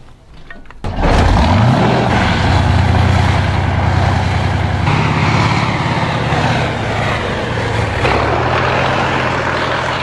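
A main battle tank driving fast over sand. Its diesel engine revs up about a second in, then runs hard and steady under the noise of its tracks.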